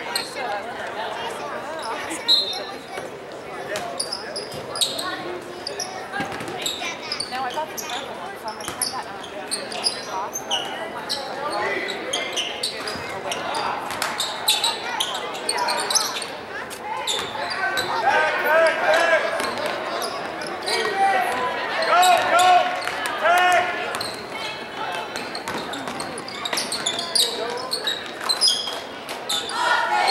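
Basketball being dribbled and bounced on a hardwood gym floor, with short shoe squeaks and indistinct shouting voices of players and spectators echoing in the gym. The voices get louder and busier about two-thirds of the way through.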